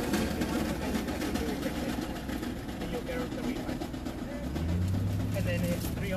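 Car engine idling, heard from inside the cabin as a steady low hum that grows louder about four and a half seconds in, with scattered knocks and rustles of groceries being handled at the open hatch and muffled voices.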